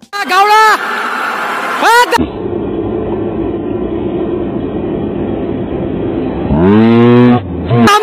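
Fighters' shouts during a taekwondo sparring bout: two short, high-pitched yells in the first two seconds, each rising then falling in pitch, and a longer, lower call falling in pitch near the end. A steady murmur of the crowd in the hall runs between them.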